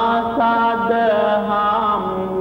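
Chanting: a voice holds long notes with small bends in pitch over a steady low drone.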